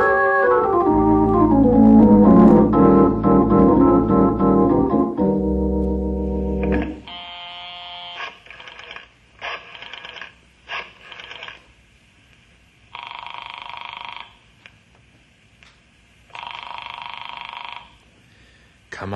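Radio-drama organ bridge: a descending run of organ notes that ends on a held chord about seven seconds in. Then telephone sound effects: a string of short dialing sounds, and two long rings near the end as a call rings through.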